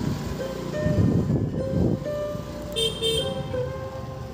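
Two-wheeler riding through a narrow street, with engine and road noise and two short horn beeps about three seconds in, over background music.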